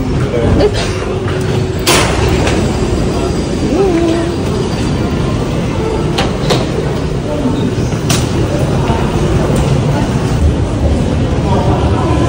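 Paris Métro station ambience: a steady low rumble of metro trains echoing in the tiled tunnels, with a few sharp clicks, the loudest about two seconds in, and people's voices in the background.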